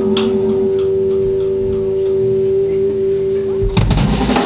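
Electric guitar holding one long, steady, pure-sounding sustained note through the amplifier; near the end the drum kit comes in with a hit.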